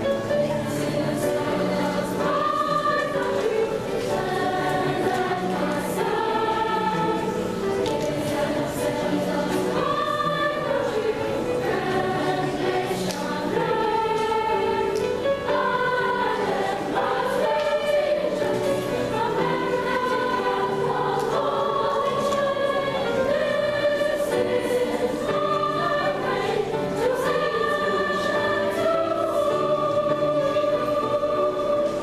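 Middle-school girls' choir singing a sustained, flowing song with piano accompaniment.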